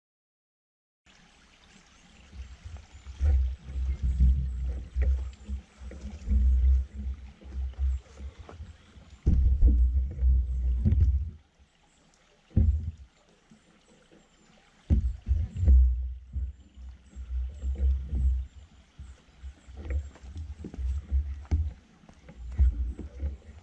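Wind buffeting the microphone: loud, irregular low rumbles that come and go, starting about a second in, with a lull near the middle.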